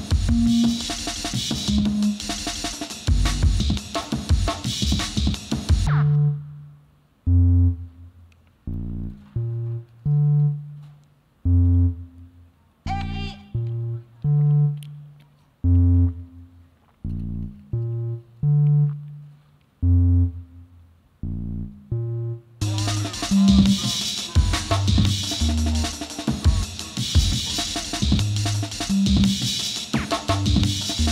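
Computer-generated jungle (drum and bass) tune played by the Overtone synthesizer. Fast, dense breakbeat drums with bass drop out about six seconds in to a sparse run of separate bass and synth notes. The full drums come back about two-thirds of the way through.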